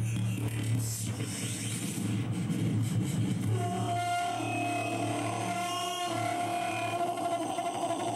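Live electronic music built from a voice fed through effects pedals: a steady low drone, with a long held, processed pitched tone that comes in about three and a half seconds in.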